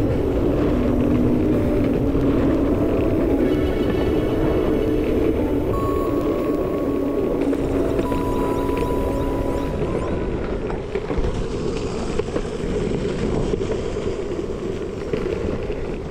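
Longboard wheels rumbling steadily over a concrete road at speed, under background music that fades out about ten seconds in.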